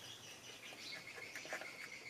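Faint outdoor background with a thin, steady high-pitched chirping tone and a few scattered light ticks.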